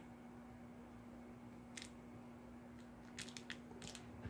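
Near silence: room tone with a steady low hum, and a few faint light ticks, once about two seconds in and several near the end.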